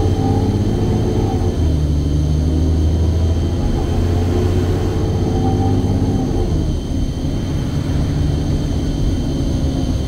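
Alexander Dennis Enviro400 double-decker bus's diesel engine pulling hard, heard from inside the lower deck with a deep, steady drone. About six and a half seconds in, the engine note drops in pitch and eases off.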